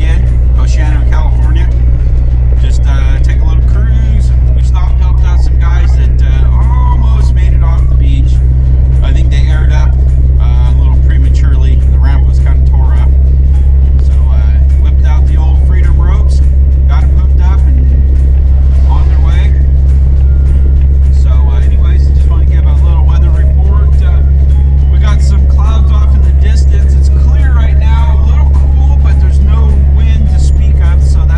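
Inside the cab of a Geo Tracker driving on beach sand: a loud, steady low drone of engine and tyres that never lets up, with music and a voice playing over it.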